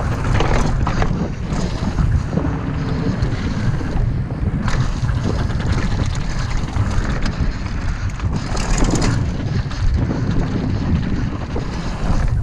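Wind buffeting the microphone of a helmet-mounted camera on a mountain bike rolling fast downhill, with knocks and rattles from the bike and its tyres on the trail.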